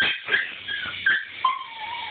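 A small Pomchi (Pomeranian–Chihuahua mix) dog barking in a series of short, high-pitched yaps, about four or five in two seconds.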